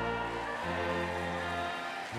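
Slow processional music from a band, held chords that change about once a second.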